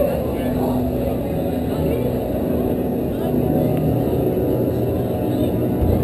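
Vekoma Boomerang coaster train being hauled backwards out of the station up the lift incline: a steady low rumble of the lift drive and the train running on the track.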